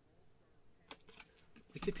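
Quiet room tone broken by one faint, sharp click about a second in, with a few softer ticks after it, as gloved hands handle a plastic football helmet and its paper certificate. A man's voice starts near the end.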